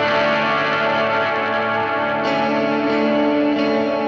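Fender electric guitar played through effects pedals, its chords ringing out in a long sustained wash, with a fresh strum about two seconds in and another near the end.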